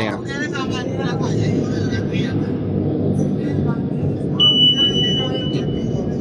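People talking over a steady low hum, with a single high electronic beep held for about a second and a half, starting about four and a half seconds in.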